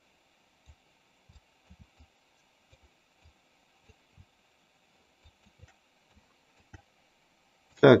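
Faint, irregular clicks of a computer mouse, about a dozen of them, over a faint steady background hiss. A man's voice starts speaking at the very end.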